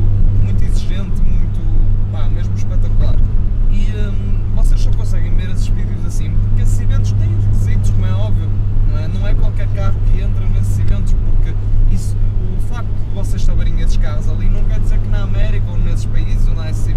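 Steady engine and road drone inside the cabin of a moving Nissan 100NX at cruising speed, with a man's voice talking over it.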